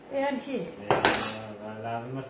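A steel kitchen knife put down with a sharp clatter on a wooden cutting board, once, about a second in.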